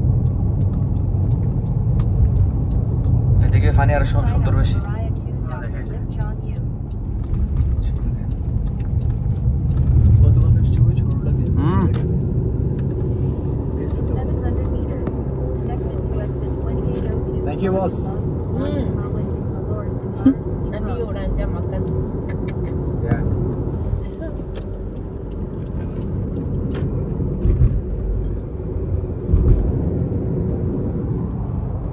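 Steady low road and engine rumble of a car driving, heard from inside the cabin, with a few snatches of quiet talk.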